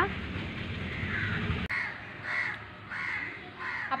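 A bird calling about five times in a row, short calls roughly every half second to second, over a low background noise that drops away about a second and a half in.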